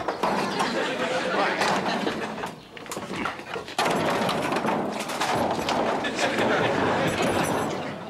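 A long steel car exhaust pipe and muffler clanking and scraping as it is wrestled loose and hauled onto a workbench, with sharp knocks throughout and a louder stretch from about four seconds in.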